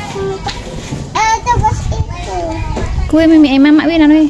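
A young girl's voice talking, rising and falling in pitch, with a longer held phrase in the last second.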